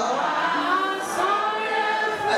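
A church congregation singing together, many voices holding long notes.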